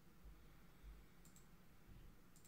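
Near silence with one faint computer mouse click a little over a second in.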